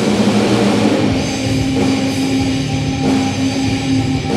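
Live heavy metal band playing an instrumental passage: electric guitars, bass guitar and drum kit together, with a long held note from about a second in.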